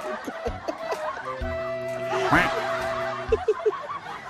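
People laughing and snickering. About a second and a half in, a steady held tone runs for about two seconds with a short rising squeal over it, and short chuckles follow near the end.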